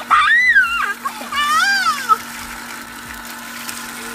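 Water from a garden hose pouring over long hair and splashing onto the ground, with a steady low hum from an electric well pump. A girl lets out two high, rising-and-falling cries in the first two seconds.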